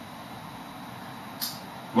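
Steady low room hiss with one short, sharp, high-pitched tick about one and a half seconds in; a man's voice begins right at the end.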